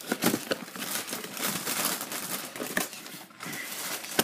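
A cereal box and its plastic inner bag being opened by hand: continuous crinkling and rustling with many small snaps.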